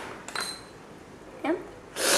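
A brief light metallic clink with a short high ring about a third of a second in, then a short vocal sound near the end; otherwise a quiet room.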